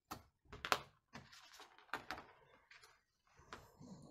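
A clear plastic set square and pencil being handled on a sheet of pattern paper: a few light knocks and scrapes as the set square is slid and lifted off the paper, the sharpest knock a little under a second in, with soft paper rustle between.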